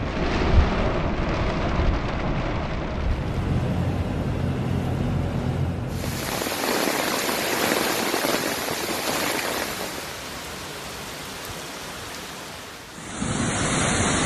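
Torrential rain hissing steadily, with a low hum under it for the first six seconds. From about six seconds in, the hiss turns brighter, then it drops quieter for a few seconds near the end.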